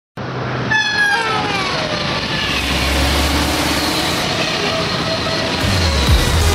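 A passing train's horn sounding, its several tones falling in pitch as it goes by, followed by the steady rush of the train passing. A music beat comes in near the end.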